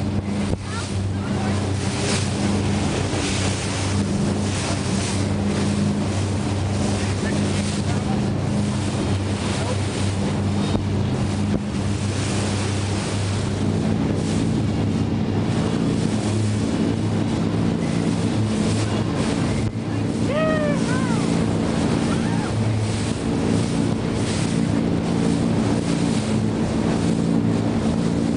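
Motorboat engine running steadily under way, with wind buffeting the microphone and water rushing past the hull. The engine note shifts slightly about halfway through, and a brief high sliding cry is heard about two-thirds of the way in.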